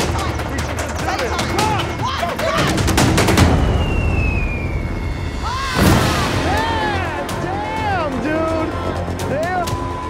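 Helicopter rotor chopping rapidly, with people yelling and whooping over it. A sudden loud burst of noise comes about six seconds in.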